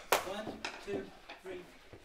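Mostly speech: a leader's voice counts "two" to a group of children. There is one sharp tap right at the start.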